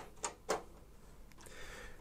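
A few faint, sharp clicks of a screwdriver on the metal thumbscrews of a PC case's expansion-slot bracket as the screws holding the graphics card are loosened, with one more click a little past halfway.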